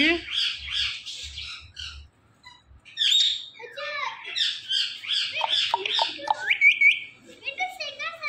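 Indian ringneck parakeet making rapid runs of high, harsh squawks and chattering calls. The calls break off for about a second around two seconds in, then start again, with lower speech-like mumbling mixed in during the second half.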